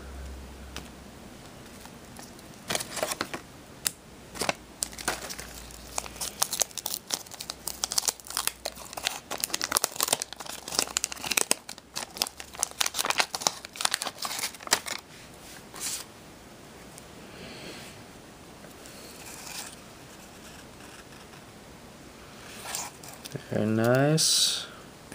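Waxed-paper trading-card pack wrapper being torn open and crinkled by hand: a dense crackling run of tears and crinkles for about ten seconds, then only light rustling.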